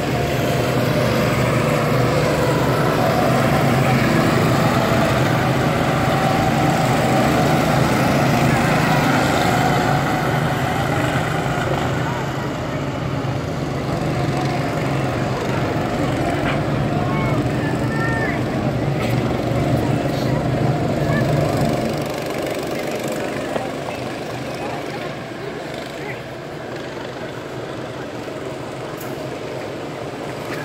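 Go-kart engines running on the track, a steady droning that drops off noticeably about two-thirds of the way through as the karts get farther away.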